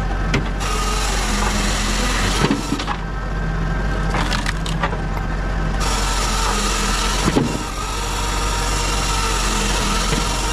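Pilkemaster firewood processor running with a steady low drone while its saw cuts through logs in two long stretches. Each stretch ends in a sharp knock of wood, about two and a half seconds in and again about seven and a half seconds in.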